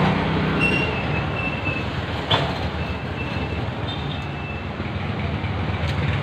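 A steady low mechanical hum under a noisy background, like a motor running, with a single sharp click about two seconds in.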